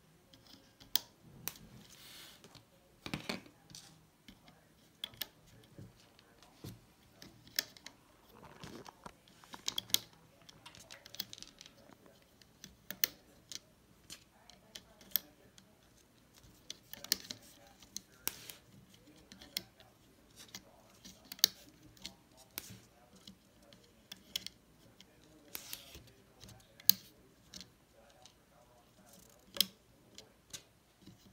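Rubber loom bands being stretched over and snapping against the plastic pegs of a Rainbow Loom, with fingers knocking the plastic: irregular sharp clicks and snaps, about one a second.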